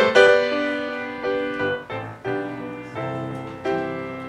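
Piano playing a slow hymn introduction: a series of struck chords that ring and fade, the loudest near the start.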